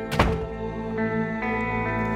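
A door thunks shut once just after the start, over background music with steady held notes.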